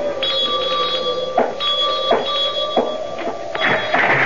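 Doorbell ringing, a bell struck several times about two-thirds of a second apart with the ringing carrying on between strokes: a radio-drama sound effect of a caller at the door.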